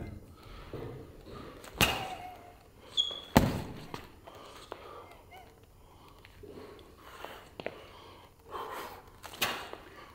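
Boxing-glove punches landing on hand-held focus mitts: three separate sharp smacks, the one about three and a half seconds in the loudest.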